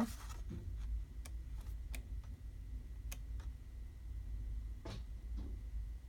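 Sheets of patterned scrapbook paper being leafed through by hand: a string of light, short paper flicks and ticks over a low steady hum.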